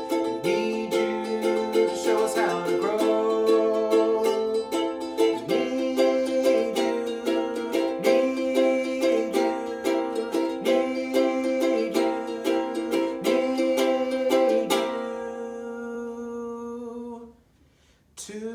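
Ukulele strummed in a steady rhythm with a man singing along. The strumming stops about fifteen seconds in, a final note is held for a couple of seconds, and then the sound cuts off suddenly near the end.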